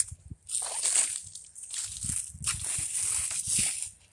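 Footsteps crunching through dry fallen leaves on grass, in two stretches of walking with soft thuds under the crackle.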